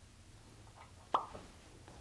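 A quiet pause broken just after a second in by a single short, sharp mouth click, a smack of the lips or tongue, close to a clip-on microphone, followed by a couple of fainter ticks.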